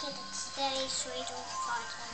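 A young girl singing softly, a few short wavering notes.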